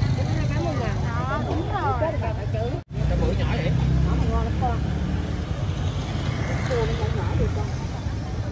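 Street-market ambience: voices chattering over a steady low rumble, with a sudden brief cut-out of all sound just before three seconds in.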